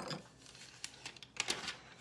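A few faint clicks and taps of small kitchen items being handled: two near the start and a quick cluster about a second and a half in.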